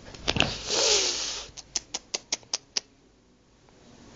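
Play-fight scuffle between a cat and a hand on a fabric couch: a brief rustling rush, then a quick run of about seven sharp clicks, roughly five a second, before it goes quiet.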